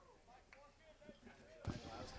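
Near silence with faint, distant voices, and one soft knock about one and a half seconds in.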